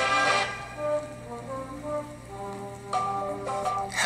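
A rap song playing: the full backing drops away about half a second in, leaving a sparse melody of single held notes without vocals, which grows louder about three seconds in.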